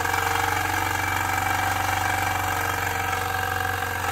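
Wilesco D305 model steam engine running steadily on compressed air, a fast even beat of its cylinder exhaust, over a steady low hum from the small air compressor feeding it. It runs smoothly and evenly: running flawlessly.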